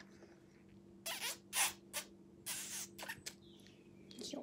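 Sucking and slurping on a sour ice lolly held to the lips: about five short, squeaky bursts between one and three and a half seconds in. A faint steady hum runs underneath.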